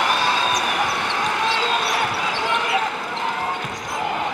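Arena sound of a basketball game in play: a basketball dribbled on the hardwood court over a steady crowd noise, with faint short squeaks.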